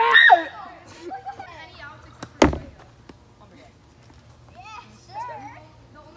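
Children shouting and talking during a wiffle ball game, with one sharp, loud knock about two and a half seconds in from the plastic wiffle ball in play.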